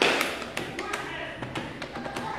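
A series of light, irregular taps and clicks, with a sharper knock at the start, typical of a pen or keys being worked while a sum is done.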